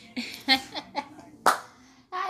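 A few sharp hand claps, the loudest about half a second and a second and a half in, mixed with brief snatches of voice.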